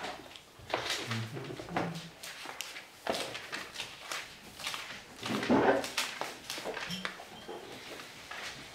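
Bible pages being leafed through, with dry rustling and small handling knocks, while the passage is looked up; a louder, lower rustle comes about five and a half seconds in.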